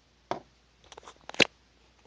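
A few light clicks and taps of a hard plastic toy-snowmobile drive sprocket being handled and set down on a workbench. The loudest is one sharp click late on.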